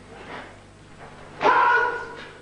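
A karate kiai: one short, sharp shout about a second and a half in, marking the focus point of the kata Heian Yondan.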